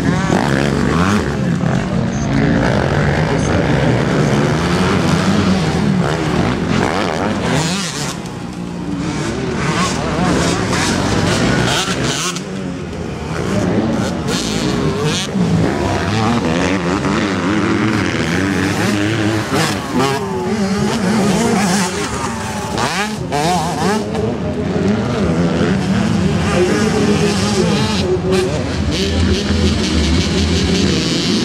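Motocross motorcycle engines revving and accelerating, several at once, their pitch rising and falling as the bikes race around a dirt track. The sound eases briefly twice before picking up again.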